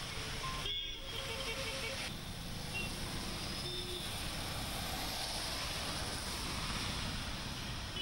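Steady hiss of heavy rain and car tyres on a wet road as traffic passes, with a short run of beeps about a second in.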